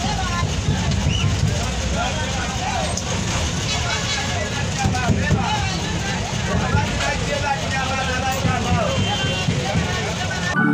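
Bus engine and road rumble heard from inside the passenger cabin, steady throughout, with people's voices talking over it.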